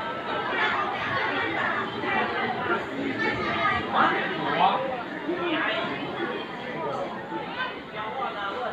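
Indistinct chatter of voices talking over one another.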